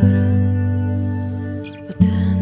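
Slow ballad played by a live band with electric guitar: a full chord with deep bass struck at the start, ringing and fading over about two seconds, with a short scratchy strum near the end before the next chord.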